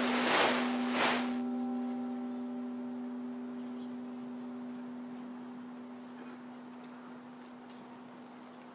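An orchestra's closing note: a single pitched tone rings on and slowly fades away, with two short crashes about half a second and a second in.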